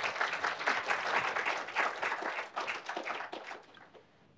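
Audience applauding at the end of a talk, a dense patter of many hands clapping that dies away near the end.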